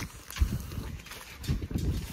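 Steers feeding at a metal feed trough: faint shuffling with two soft knocks, about half a second in and again a second later.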